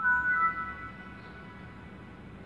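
Toshiba laptop's system chime through its small built-in speaker: a short sequence of clear notes stepping upward in pitch, fading out about a second in, as the laptop starts up again after its battery pack was refitted.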